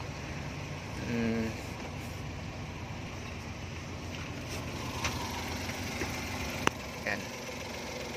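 Suzuki Carry's 660cc K6A three-cylinder engine idling steadily, with a sharp click near the end.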